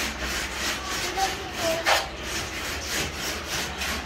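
Repeated hand-worked rubbing strokes against a puttied plaster wall, a few strokes a second, as the surface is smoothed before painting.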